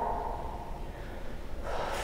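A woman breathing quietly as she relaxes from a held backbend stretch, with a short, sharp intake of breath near the end.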